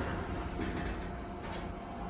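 Schindler 330A hydraulic elevator's center-opening car doors closing with a soft thud right at the start, followed by a steady low hum inside the car.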